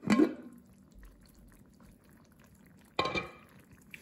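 Glass lid of a slow cooker being handled and lifted off: a sharp clink at the start, then another clink with a brief ring about three seconds in.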